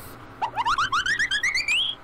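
A warbling pitched sound: rapid short upward chirps, about eight to ten a second, climbing steadily in pitch over about a second and a half, like a siren sweep. It starts about half a second in and stops just before the end.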